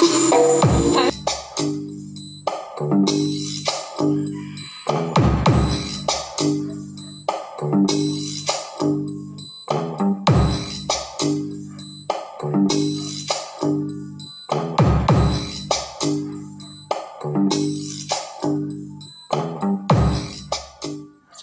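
Music with a steady drum beat and a repeating bass line, played loud through a 350-watt speaker driven by a Nobsound NS-01G mini Bluetooth amplifier on one channel.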